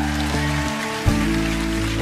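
Live band playing a song's instrumental opening: sustained guitar and bass chords, with a new chord coming in about a second in.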